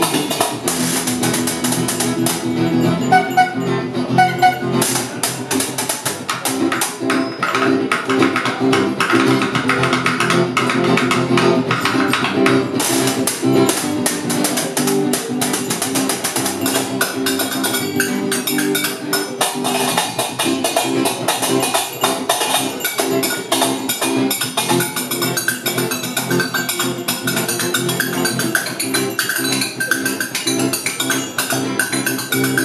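Live acoustic music: an acoustic guitar strummed in a brisk, steady rhythm, with a small upright brass horn playing held low notes over it.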